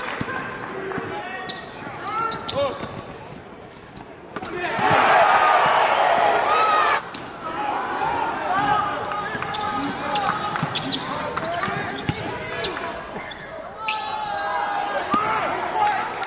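Basketball being dribbled on a hardwood gym floor, with sneakers squeaking and people talking and shouting in the gym. A louder stretch of voices starts about four and a half seconds in and cuts off suddenly near seven seconds.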